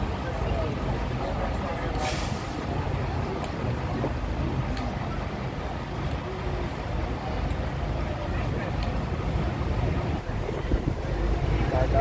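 Diesel engine of an open-top double-decker tour bus running while the bus stands, heard from the open upper deck with street noise. A brief hiss comes about two seconds in, and the engine grows louder near the end as the bus moves off.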